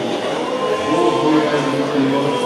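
Voices singing Orthodox liturgical chant in long held notes.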